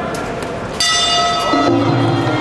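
Boxing ring bell struck once, about a second in, ringing on with a bright metallic tone to signal the start of the round. A lower, wavering musical tone comes in near the end.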